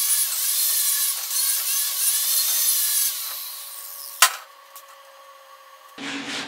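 Angle grinder with a wire wheel brushing steel, scouring the slag off stick-welded tacks where a round steel column meets its base plate. The steady scouring runs for about three seconds, then dies away over about a second as the wheel comes off the work. A single sharp knock follows about four seconds in.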